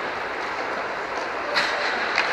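Steady rolling noise of inline skate wheels on the rink floor in a reverberant hall, with one sharp click about one and a half seconds in.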